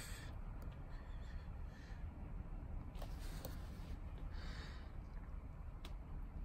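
Faint steady low rumble with a few light taps on a handheld scan tool's touchscreen, and a soft breath about four and a half seconds in.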